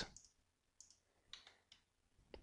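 Near silence broken by about three faint computer mouse clicks spread across the two seconds.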